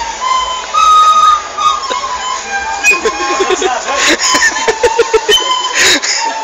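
Several recorders playing a simple melody together in held notes. From about three seconds in, voices and a few sharp knocks come over the playing, with a loud noisy burst near the end.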